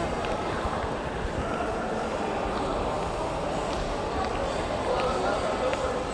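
Steady background chatter of people in a large, busy indoor hall, with no single voice standing out.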